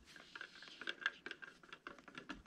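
A stir stick scraping and knocking faintly inside a metal can of de-waxed shellac, a quick irregular run of small clicks.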